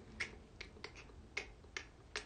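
A series of short, sharp clicks at uneven spacing, about seven in two seconds, made by hand close to the microphone.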